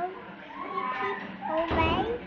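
A toddler's high-pitched voice, unclear words spoken with pitch rising and falling, loudest near the end.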